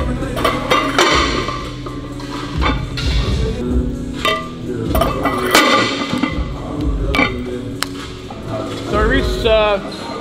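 Background music with vocals, over which weight plates clink and knock a few times as they are slid onto a barbell.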